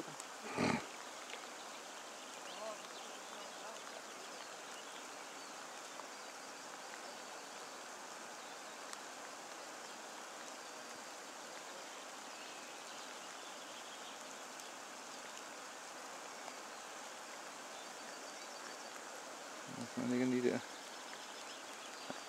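Steady rushing of a fast-flowing river, with a brief voice near the end.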